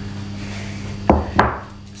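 A piece of sandstone set down on a tabletop, knocking against it twice in quick succession.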